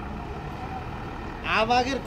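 Forklift engine running with a low, steady rumble. Near the end a man's voice comes in loudly.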